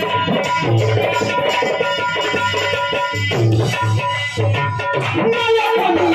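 Live stage music through a PA system: an instrumental passage with a plucked-string melody over a steady hand-drum beat, no singing. A steady high tone runs underneath.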